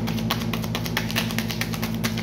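A deck of oracle cards being shuffled by hand: a rapid run of card clicks, about ten a second, over a steady low hum.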